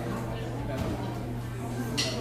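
Indistinct talking from several people, with no clear single speaker, over a steady low hum.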